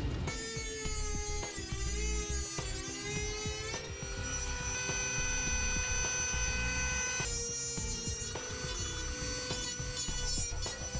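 Cordless rotary tool with a cut-off wheel whining at high speed as it cuts a notch through the thin sheet steel of a pickup's wheel well. Its pitch sags a couple of times under load in the first few seconds, then holds steady.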